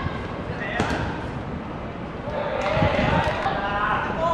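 A football kicked with a sharp thud about a second in, amid players' shouts on the pitch.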